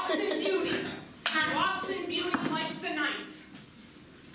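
Voices on stage, speaking or vocalising, with a single sharp clap about a second in.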